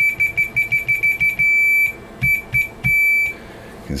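Electronic buzzer switched by a relay, beeping a single high tone while the button is held. A quick string of short beeps, about eight a second, runs for the first second and a half. Then comes a held beep, three short ones and a last held beep, each starting and stopping instantly with the press, which shows the relay switching with no latency.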